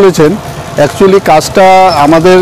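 A man's voice talking, with a drawn-out syllable near the end.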